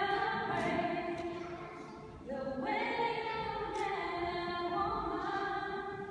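Unaccompanied singing in a church: slow phrases of long held notes, with a short break about two seconds in.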